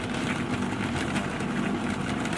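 A car buffer's electric motor running steadily, spinning a towel-lined bucket of billiard balls that tumble and tick lightly against one another.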